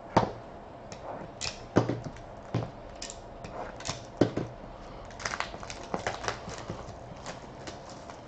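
A shrink-wrapped trading-card box being slit open and handled on a desk: a few sharp knocks of the box and blade, then a run of quick crackling as the plastic wrap is torn off.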